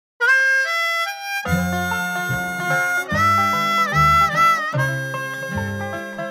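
Instrumental intro of a bluegrass song: a harmonica plays the melody alone, with bent notes, and the band's bass and rhythm come in about a second and a half in.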